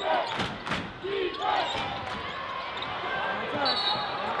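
Basketball game sounds in an arena: a few thuds of a basketball bouncing in the first second and short sneaker squeaks on the court, over a murmur of crowd voices.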